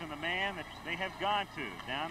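Quiet speech: a man talking low in the mix, the old TV broadcast's commentary playing under the room.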